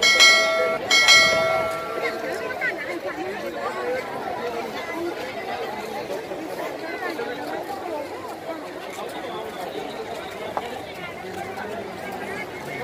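Steady babble of a large crowd of people talking at once. Right at the start, two loud ringing tones sound about a second apart, each fading away.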